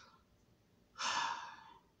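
A man sighing: one breathy exhalation about a second in, lasting under a second.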